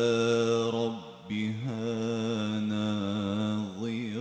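A man's solo melodic Quran recitation into a microphone: one long held note, a short break about a second in, then a second long held note that ends in wavering ornamental turns.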